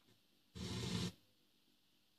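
Blaupunkt Düsseldorf C51 car radio giving a burst of FM static about half a second long, halfway through, as it switches band and station. Otherwise near silence.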